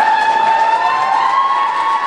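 High voices, likely the children on stage, holding one long high note together that drifts slightly upward in pitch.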